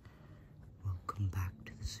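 A person whispering close to the microphone, starting about a second in, in breathy bursts.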